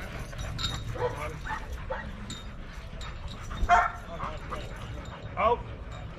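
A young European Doberman making a few short, separate calls while gripping a bite pillow in protection work. The loudest call comes a little past halfway.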